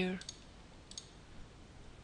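Two faint computer mouse clicks, about a quarter second in and again about a second in, each a quick double tick.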